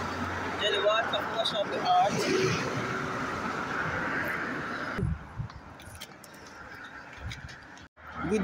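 Brief, indistinct talk over steady outdoor road noise. About five seconds in, the noise drops to a quieter background with a few soft low knocks.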